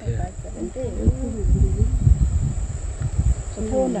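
Steady, high-pitched chirring of insects over a low rumble, with faint voices in the first half and a person starting to speak near the end.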